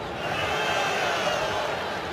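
Football stadium crowd: a steady roar of many voices from the stands, swelling slightly about half a second in.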